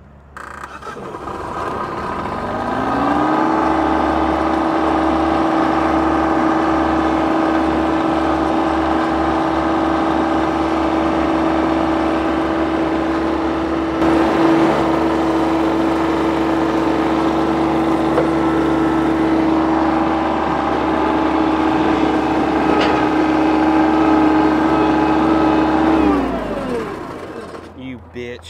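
Mahindra compact tractor's engine rising from idle to a steady high-rpm run over the first few seconds, with a steady whine on top, held while the loader-backhoe tractor is driven up onto a trailer, then throttled back down near the end.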